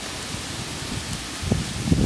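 Hair dryer running on high, blowing air through a pipe into a lump-charcoal forge: a steady hiss, with a low rumble joining about a second and a half in.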